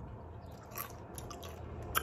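Faint chewing of a small bite of Doritos tortilla chip, with a few soft crunches and a short sharper click near the end.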